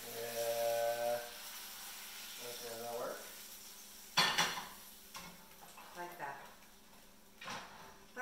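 Food sizzling faintly in a frying pan on the stove, with a sharp clatter of metal pan and utensil about four seconds in and lighter clinks and scrapes after it.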